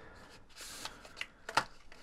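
Cardboard and paper packaging being handled: a soft sliding rustle about half a second in, then a few light clicks and taps.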